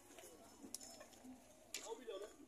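Near silence: faint distant voices, with a couple of soft clicks, one just under a second in and one near the end.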